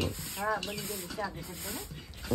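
A person's voice, briefly, over a steady hiss.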